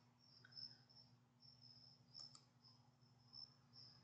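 Near silence: crickets chirping faintly in short, repeated high trills, with two soft computer-mouse clicks a little past halfway.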